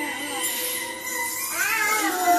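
Animated film soundtrack playing from a television: steady held music tones, with a short pitched cry that rises and then falls in the second half.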